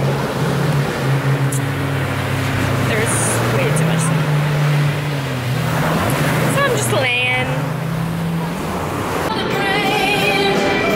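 Beach ambience: a steady rush of surf and wind with a low, engine-like drone that rises and falls in pitch, and a brief voice about seven seconds in. Music starts near the end.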